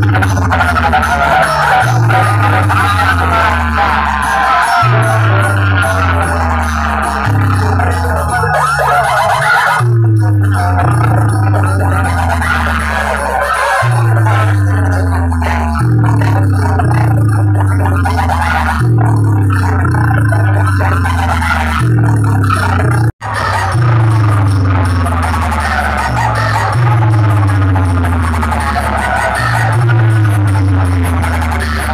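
Loud dance music played through a large outdoor DJ speaker-box rig, with deep bass notes that slide downward, one every second or two. The sound cuts out for an instant about three-quarters of the way through.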